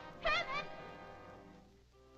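A cartoon mouse's short, high, wavering cry of distress over a soft orchestral score, which fades down toward the end.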